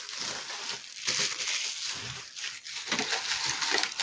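Plastic wrapping crinkling and paper rustling as a pack of A4 paper is unwrapped and handled. There are uneven crackles throughout, with no clear strokes.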